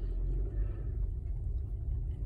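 Steady low rumble of a car heard from inside the cabin as it creeps along.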